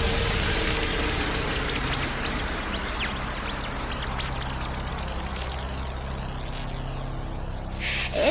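Hardcore dance music in a beatless breakdown: a wash of white noise with repeated sweeping whooshes over held low bass notes, slowly getting quieter.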